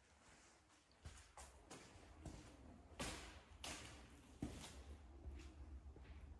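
Near silence, then from about a second in faint, irregular taps and knocks, the loudest about three seconds in.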